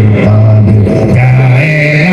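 A male voice chanting dhikr through a microphone and loudspeaker, in long held notes that step up and down in a slow, repeating tune.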